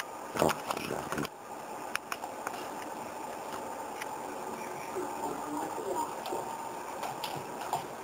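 Scattered computer-keyboard key clicks over a steady hiss, with some faint voice sound from the radio, louder in the first second.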